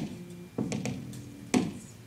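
Hip-hop drum machine beat from GarageBand's Smart Drums on an iPad, played through a small amplifier at a slow tempo: single drum hits with a short low tail, about a second apart.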